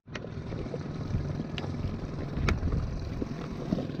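Uneven low rumble of wind and water on the boat's camera microphone, with a few sharp clicks, one just after the start and others about a second and a half and two and a half seconds in.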